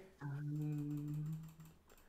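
A person humming one long, low "mmm" at a steady pitch for about a second and a half.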